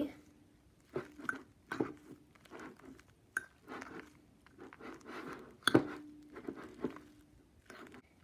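Slime and shaving cream being stirred in a bowl: irregular squishy, crackly sounds with occasional clinks of the stirring utensil against the bowl, which rings briefly after each. The loudest clink comes about two-thirds of the way through.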